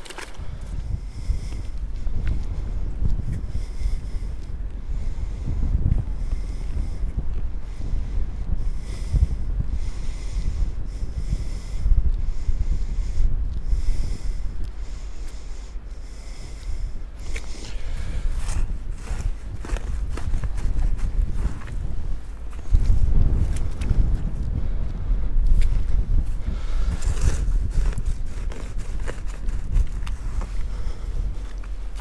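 Wind buffeting the microphone in a low rumble, gusting louder about two-thirds of the way through.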